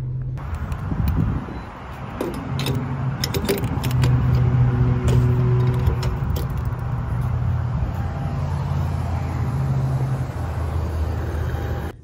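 Refuelling a car at a gas station pump: sharp clicks and knocks of the fuel nozzle and filler being handled, over a steady low hum.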